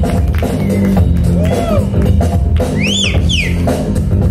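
DJ-played break music with a heavy bass line and a steady drum beat, loud, with a high sweep that rises and falls about three seconds in.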